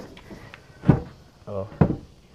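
Thick mahogany boards knocking against the wooden frame as a removable front panel of a knock-down sheep pen is worked loose and lifted out of its slot. There are two sharp wooden knocks, about a second apart.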